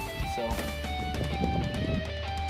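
Background music with guitar.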